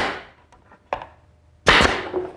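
Brad nailer driving brads into plywood: a sharp shot at the start that dies away, a small click about a second in, and a second shot near the end.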